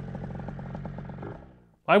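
94cc two-stroke scooter engine running steadily with rapid firing pulses, fading out about a second and a half in.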